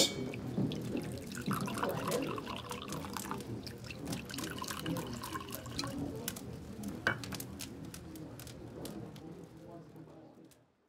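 Water trickling and dripping, with scattered small clicks, slowly fading away to silence near the end.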